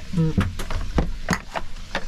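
Several sharp knocks and clicks, about four in two seconds, from things being handled at an open camper fridge, with a brief word spoken near the start.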